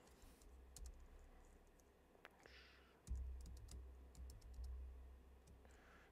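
Faint computer keyboard typing: scattered single key clicks. A low rumble comes in about three seconds in.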